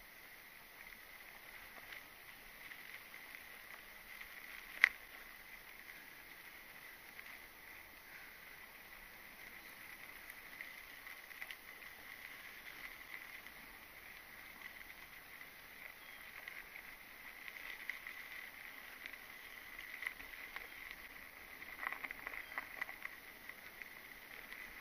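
Faint rolling hiss and rattle of a mountain bike riding over a dry dirt and gravel track, with one sharp click about five seconds in and a cluster of rattles near the end.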